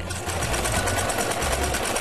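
Electric sewing machine running steadily, its needle stitching a seam through fabric in a rapid, even rhythm.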